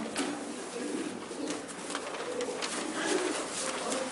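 Noise from a seated church congregation: a steady rustling haze with many scattered small clicks and low indistinct sounds underneath.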